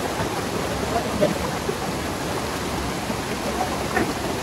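Fast white water rushing over boulders in a rocky stream at the foot of a waterfall, a steady, even rush.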